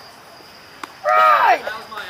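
A person's loud shout or call, one drawn-out cry that falls in pitch, about a second in, just after a short, sharp click.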